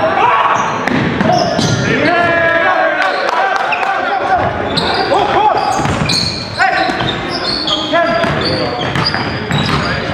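Basketball game in a gym: the ball bouncing on the hardwood floor, short high sneaker squeaks and players' voices calling out, all echoing in the hall.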